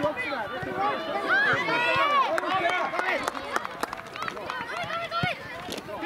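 Many voices shouting and calling over one another, with high-pitched children's voices among them: youth football players and sideline spectators during play.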